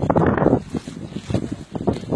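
Wind buffeting the microphone of a handheld camera: a rough, uneven rumble, heaviest in the first half second.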